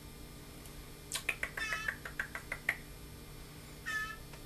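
Young blue jay giving a quick run of short, high-pitched begging calls about a second in, lasting about a second and a half, then one more short call near the end.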